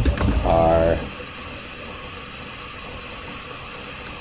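A few computer keyboard keystrokes and a short wordless vocal sound from the lecturer in the first second, then a steady faint hiss.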